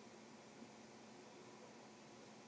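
Near silence: a faint steady hiss of background noise.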